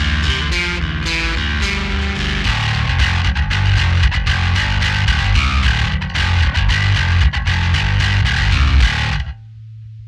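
Electric bass played through a RAT distortion pedal into the dirty amp alone, a heavy, rhythmic riff of low distorted notes. The playing stops about nine seconds in, leaving a steady low amp hum.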